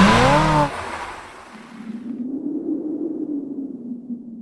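Intro sound effect: a loud burst with tones sweeping up and down cuts off under a second in, fades as a hiss, and is followed by a low wavering hum.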